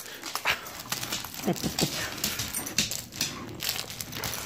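A Dalmatian grabbing and mouthing a plush toy, a run of short rustling noises.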